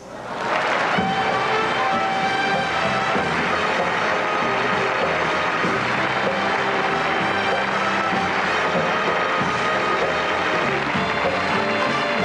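Audience applause over entrance music greeting a performer walking on stage. The applause swells within the first second and then holds steady under the music.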